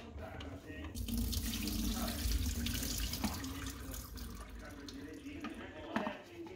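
Water running from a kitchen tap into a stainless-steel sink. It starts about a second in, runs for about three seconds and then dies away. A sharp knock comes about halfway through.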